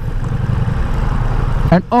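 Ducati Multistrada V4 S's 1158 cc V4 engine idling steadily with the bike standing still in first gear, ready to pull away.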